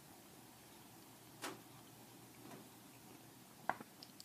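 Near silence with a few light clicks: a faint one about a second and a half in and a sharper one near the end.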